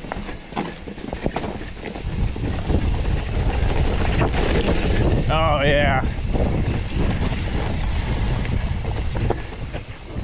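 Mountain bike rolling fast down a rocky dirt trail: wind rushing over the camera microphone, mixed with tyre rumble and the rattle of the bike over rocks, growing louder after about two seconds as speed picks up. About five and a half seconds in there is a brief wavering high-pitched tone.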